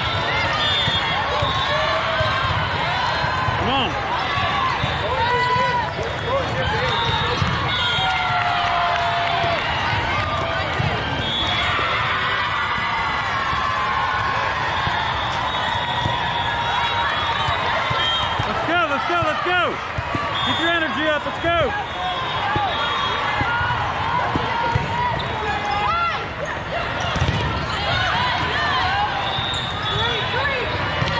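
Volleyball in play in a large hall: a steady din of many overlapping voices from players and spectators, with the thuds of volleyballs being hit and bouncing on the floor and sneakers squeaking on the court.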